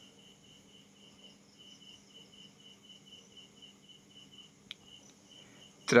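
Faint insect chirping: a steady train of short, high pulses about five a second, breaking off briefly early on and stopping about four and a half seconds in. A single faint click follows shortly after.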